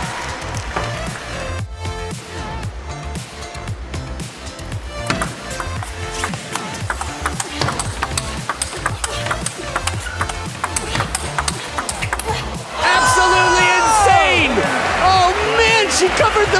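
Table tennis rally: the celluloid ball clicking off bats and table, over background music. About thirteen seconds in, loud shouting voices rise over it and carry on.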